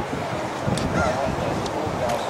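Wind on the microphone, a steady rushing noise, with a faint brief tone about a second in.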